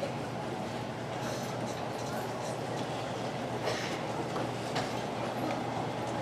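Stage curtain being drawn open, a steady rolling noise from its carriers running along the overhead track, over a low murmur from the audience.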